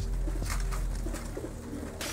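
Homing pigeons cooing as the flock feeds, with a few sharp ticks of beaks pecking grain from a wooden trough, over a steady low rumble.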